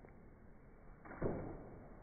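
Christmas wrapping paper being torn from a gift box, with one sudden rip a little over a second in that fades within about half a second.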